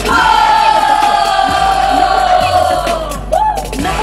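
A woman's high voice through a stage microphone holding one long shouted note that slowly falls in pitch for about three seconds, then a short rising-and-falling yelp, over a steady backing track.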